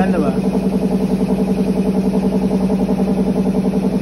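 Garlic peeling machine's electric motor running, a steady hum with an even pulse about seven times a second.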